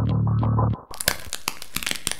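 Soundtrack of a projection-mapping show: a held low bass note ends just under a second in, then a dense run of sharp crackling, crunching clicks takes over.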